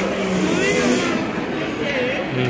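Voices talking indistinctly in a busy restaurant dining room, over a steady background hum of the room.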